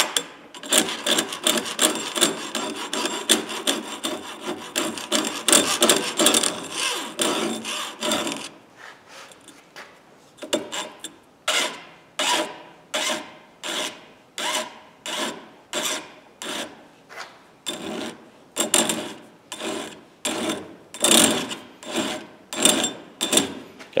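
Hand file rasping on the steel tip of a broken screwdriver held in a vise, reshaping the tip. Quick, continuous filing for the first several seconds, a short pause, then separate even strokes about two a second.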